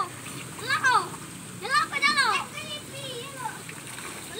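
Children's high-pitched voices giving a few short calls, over splashing and water as they wade in a shallow muddy stream.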